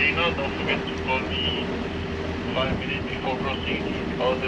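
A voice coming through a handheld VHF marine radio, thin and narrow-sounding, over a steady low hum.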